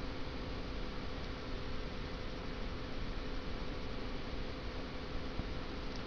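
Steady background hiss with a faint low hum underneath, no distinct events.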